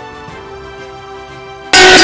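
Quiet background music with sustained notes, then about 1.7 s in a sudden, very loud cut to crowd field audio full of clanging, ringing metal, like hand cymbals or bells.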